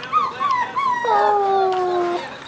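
Six-week-old Shetland sheepdog puppies whimpering in short rising-and-falling cries, then, about a second in, a long howl that sinks slightly in pitch.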